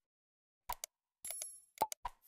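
Faint subscribe-animation sound effects: two quick click-pops, then a short high ding a little past a second in, then another pop near the end.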